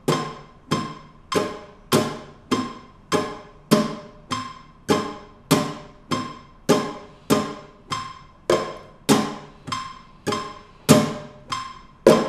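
Nylon-string flamenco guitar strummed once per beat with a metronome beeping at 100 bpm. Each short beep lands together with a single ringing strum, a steady pulse of about twenty strokes. It is the slow first stage of practising the abanico (flamenco triplet), one strum per beat.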